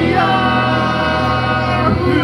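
Live rock band with bass and electric guitar under a long held sung note, with two voices singing together; the note settles just after the start and glides at the end.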